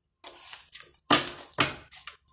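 Tarot deck being handled on a desk: a brief rustle of cards, then two sharp card slaps about half a second apart.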